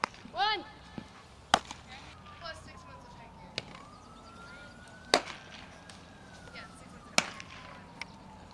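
Sharp cracks of a softball being hit and caught in a glove, four of them a second or two apart, during infield ground-ball practice. A short shout comes just after the start, and a faint siren wails slowly up and down from about two seconds in.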